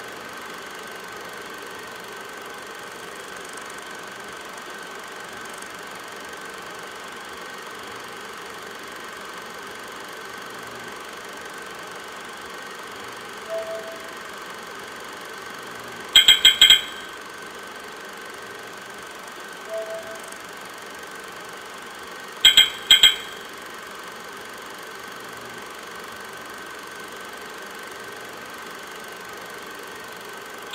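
Steady electronic sound-design drone with a humming tone. A soft short tone comes twice, about 13 and 20 seconds in. Each is followed a few seconds later by a quick cluster of sharp, bright electronic clicks: about four at 16 seconds and three at 22 seconds.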